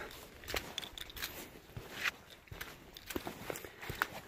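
Hiking boots stepping along a wet, muddy trail, a series of soft, uneven footfalls.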